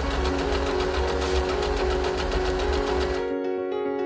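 Electric sewing machine running fast, its needle stitching in a rapid, even rhythm, then stopping abruptly about three seconds in, over background music.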